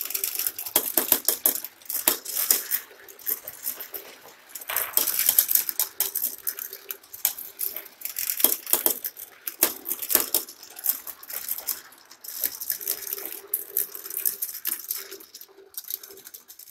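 Several marbles rolling and clattering down a GraviTrax plastic marble run. A steady rolling rumble runs under rapid clicks and knocks as the balls drop between levels and strike the track pieces, coming in waves as different balls pass through.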